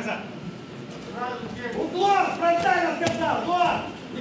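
A man's voice speaking or calling out over the hall noise of a boxing arena, with a single sharp knock about three seconds in.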